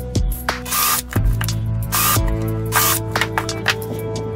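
Background music: held notes with a few short, noisy percussive hits.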